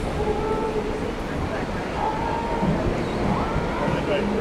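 Steady low rumble on an open ship deck as the ship pulls away from the pier, with faint voices of people talking in the background.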